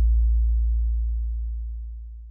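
Closing deep bass tone of an electronic intro jingle, fading out steadily to silence.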